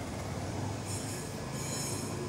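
Low, steady background noise with a faint hum, with no distinct event in it.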